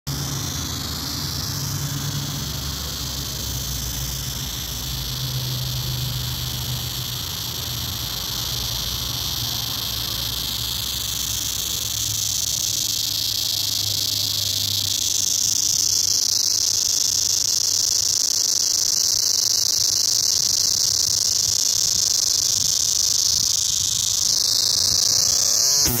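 A cicada singing: a loud, steady, high-pitched buzz that grows louder about halfway through and then holds.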